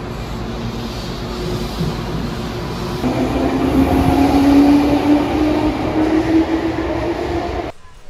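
Keihan electric train running, heard from inside the passenger car as a steady rumble. About three seconds in it grows louder, and a humming tone rises slightly in pitch; the sound cuts off just before the end.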